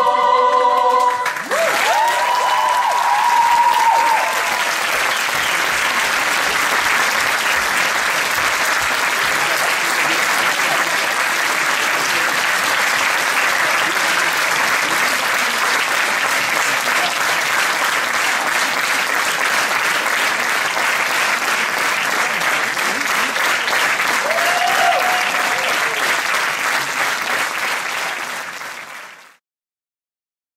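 A choir's held final chord ends about a second and a half in, and a theatre audience breaks into steady applause with a couple of cheering voices. The applause fades out near the end.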